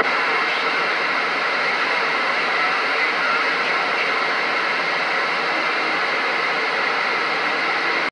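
Steady hiss of receiver static from a Galaxy radio's speaker, with no station transmitting on the channel after the last one unkeys.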